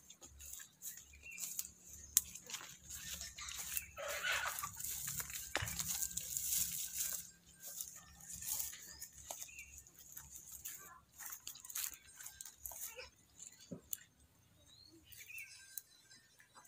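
Quiet, scattered crackles, clicks and rustles of hands rubbing wet paste onto bare feet and toes and scraping more from a small bowl, with a busier stretch of rubbing noise about four to seven seconds in.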